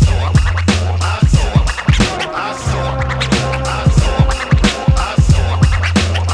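Hip hop beat with a steady drum pattern and deep held bass notes, with turntable scratching over it.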